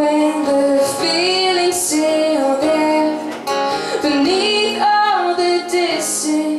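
Woman singing a song with held notes, accompanying herself on acoustic guitar.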